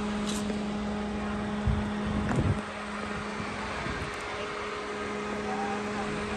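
A steady mechanical hum over outdoor background noise, with a couple of low thumps around two seconds in.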